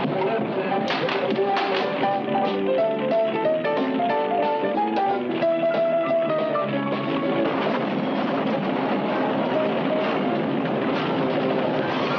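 Eerie film-score music: plucked notes in a stepped, wandering melody, giving way about seven seconds in to a denser, noisier wash of sound.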